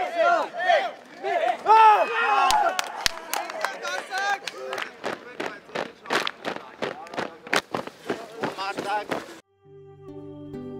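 A group of soldiers shouting together in short, rising-and-falling calls as they heave on a rope. Then boots strike the ground in unison, about three steps a second, as a column runs in step with voices between the steps. Music begins just before the end.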